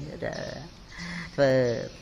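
Speech only: a man talking in Khmer into a microphone, with a brief lull before one drawn-out syllable about a second and a half in.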